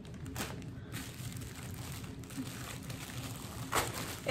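Paper gift wrapping crinkling and rustling as it is pulled off a package by hand, with a couple of brief louder rustles.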